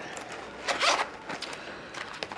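A zip being pulled open in a few short strokes, the longest about a second in, as a bag is opened to get money out.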